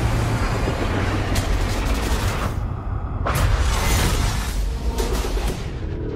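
Dramatic film-trailer music mixed with dense booms and gunfire-like hits over a wash of noise. It drops away briefly near the middle, then comes back with a loud hit followed by several more impacts.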